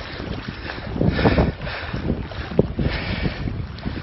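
Floodwater splashing and sloshing in uneven surges as someone wades through a flooded street, the loudest about a second in, with wind buffeting the phone's microphone.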